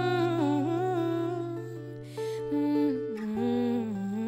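A woman humming a wordless, gliding melody over acoustic guitar accompaniment, with a quick breath about halfway through.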